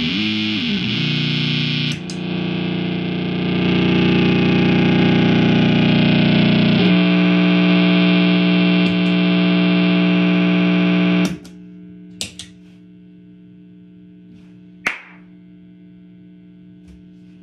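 Electric guitar feedback through distortion and effects pedals: a loud sustained distorted drone that wavers in pitch at first, then holds and shifts to a new pitch partway through. It cuts off suddenly about 11 seconds in, leaving a steady amplifier hum with a few sharp clicks.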